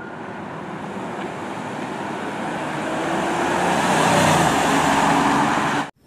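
Police SUV driving by in street traffic, its engine and tyre noise growing steadily louder and then cutting off suddenly near the end.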